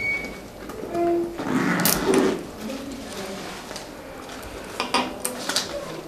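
Rummaging in a handbag and pulling out a paper envelope: a rustling stretch in the first half, then a few sharp clicks and knocks against the glass table near the end.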